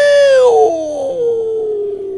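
A man's voice holding one long, loud drawn-out cry into a microphone. About half a second in it breaks into a quieter held note that sinks slowly in pitch.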